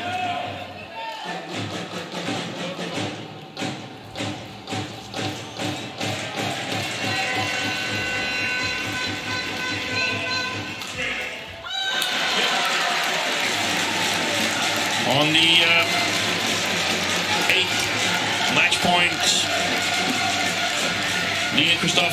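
Sharp shuttlecock strikes and footfalls of a badminton rally. About halfway through the sound turns to louder cheering, clapping and shouts from supporters.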